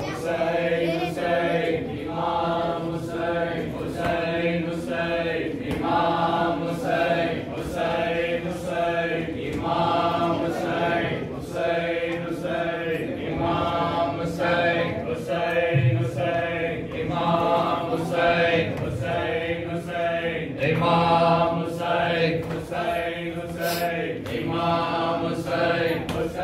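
A group of men chanting together in long rising and falling phrases, a mourning recitation, with faint sharp slaps at a steady beat.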